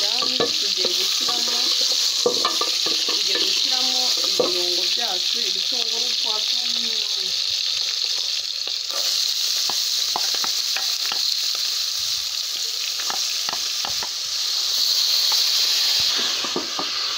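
Beef pieces sizzling in hot oil in an aluminium pot, stirred with a wooden spoon that gives scattered light clicks against the pot. The sizzle grows louder near the end.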